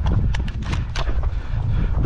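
Footsteps crunching on a dry dirt track, a few uneven steps about a quarter second apart, over a low rumble.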